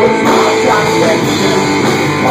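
Live rock band playing loud: distorted electric guitars over a drum kit, in a stretch without singing.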